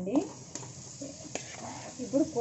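Marinated fish being scraped from a plastic bowl into a pan of onion-masala paste frying in oil, with a steady low sizzle. A few light clicks of the spatula against the bowl and pan.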